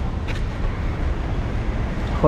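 Roadside traffic noise: a steady low rumble of vehicles on the road.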